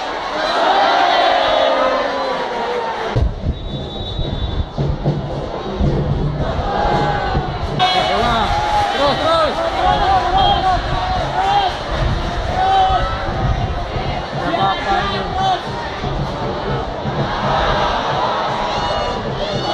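Football supporters in the stands chanting and shouting together, many voices overlapping in a sing-song way.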